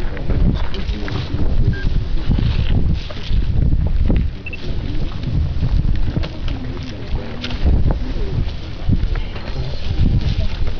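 Wind buffeting the microphone in uneven gusts, with faint voices from people standing around.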